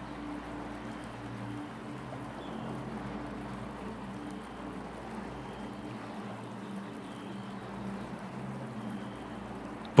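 Soft meditation background bed: a steady rush of running water over a low sustained drone that holds a few notes.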